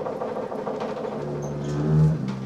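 Double bass bowed in free improvisation: a rough, scratchy bowed texture, then a low sustained note that swells in near the end.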